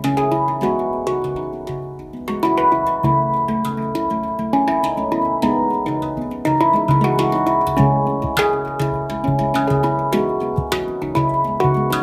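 Two handpans played together by hand: ringing, sustained steel notes struck in a continuous flowing pattern over a repeated low bass note.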